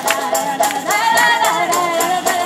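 Live acoustic folk-punk band playing, with banjo, washboard and tambourine keeping a steady beat under singing voices.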